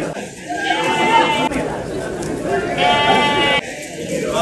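A goat bleating, with one long call about three seconds in.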